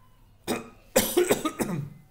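A man coughing: one short cough, then a louder run of coughs about a second in.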